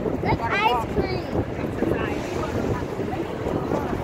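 Wind buffeting the microphone over a steady rumble of street noise, with a brief high-pitched voice about half a second in.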